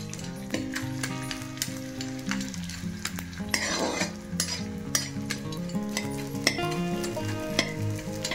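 Edible gum (dink) frying in hot ghee in a kadhai, sizzling as it puffs up, with a spatula stirring it and clinking against the pan many times.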